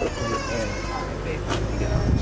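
Men's voices talking briefly outdoors over a steady low rumble that grows stronger near the end.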